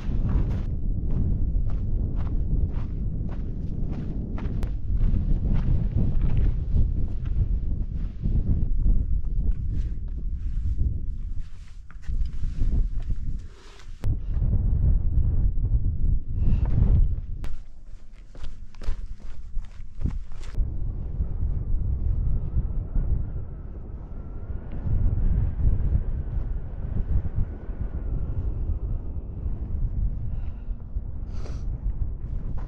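Footsteps of a hiker in trail shoes crunching on gravel and loose rock, irregular and frequent for most of the time, then fewer and slower later on, over a steady low rumble of wind on the microphone.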